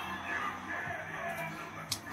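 Faint background music, with a short click near the end.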